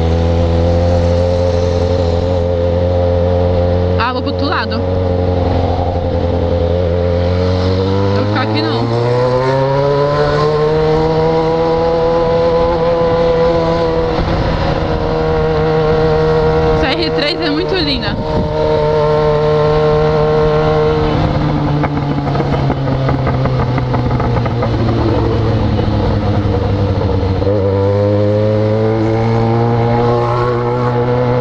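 Yamaha XJ6's 600 cc inline-four engine heard from the rider's seat, through an exhaust run without its baffle: steady and low at first, revving up about eight seconds in, holding at higher revs, easing off slowly, then picking up again near the end. Two brief high-pitched sounds cut across it, about four and seventeen seconds in.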